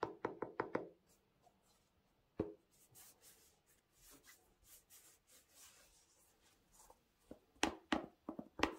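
Gloved hands handling a sneaker. A quick run of light knocks and taps comes in the first second, a single knock about two and a half seconds in, soft rubbing between, and two louder knocks near the end.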